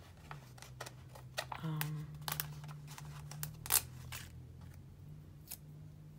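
Planner sticker sheets handled and a sticker peeled from its backing: scattered light paper ticks and crinkles, one sharper click about three and a half seconds in, over a steady low hum.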